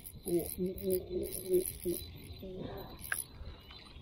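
A low, indistinct male voice murmuring for a couple of seconds, with faint intermittent high-pitched chirring behind it.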